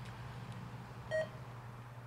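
A single short electronic beep a little over a second in, over a steady low hum.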